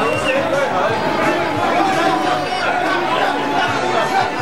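A crowd of football supporters, many voices shouting and chattering at once.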